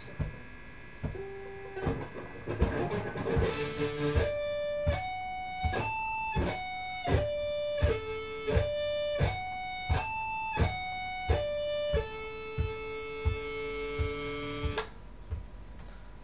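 Electric guitar playing a D major sweep arpeggio slowly and cleanly, one note at a time about every 0.6 s, up and down twice, then ringing on a held note near the end. Regular clicks keep the beat under the notes, from a metronome.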